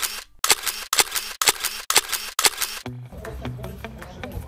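A camera shutter clicking over and over, about two clicks a second, stopping about three seconds in.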